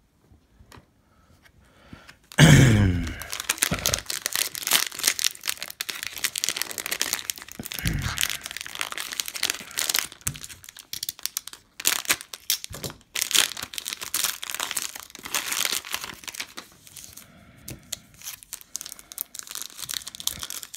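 A foil trading card pack wrapper being torn open and handled, with dense, irregular crinkling and tearing. It starts after about two seconds of quiet and thins out near the end.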